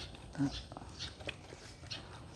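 A dog making one brief, low vocal sound about half a second in, with a few faint ticks around it.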